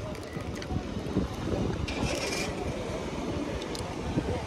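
Wind buffeting the microphone over steady outdoor ambience, with a brief rustle about two seconds in.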